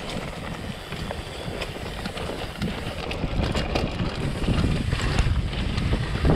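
Mountain bike rolling fast down a dirt trail: tyre and trail noise under heavy wind buffeting on the microphone, with many small clicks and rattles from the bike, getting louder in the second half.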